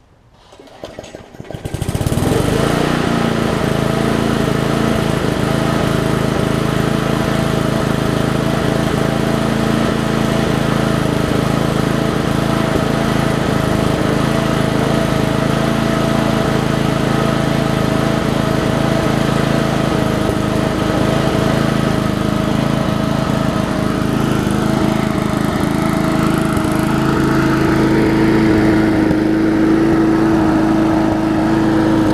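Murray push mower's Briggs & Stratton Classic 3.5 hp single-cylinder engine pull-started. It catches about two seconds in and runs steadily, on a freshly fitted carburettor diaphragm.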